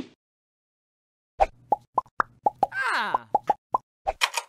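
Cartoon sound effects: a quick string of about nine short, pitched pops over two and a half seconds, with a falling glide in the middle. A single short burst of sound comes right at the start.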